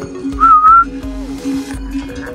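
A single short whistled note, about half a second long, rising slightly and then holding level, over background music with steady held notes.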